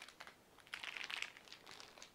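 Faint crinkling of the clear plastic wrap around a bar of soap as it is handled, loudest about a second in.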